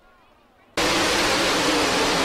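A pack of sprint cars racing on a dirt track, many engines at full throttle blending into a loud, even noise. It cuts in suddenly about three-quarters of a second in, after a brief faint moment.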